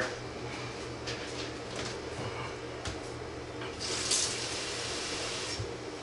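Faint off-camera kitchen handling sounds: a few light knocks, and a short hiss about four seconds in, over a steady low hum.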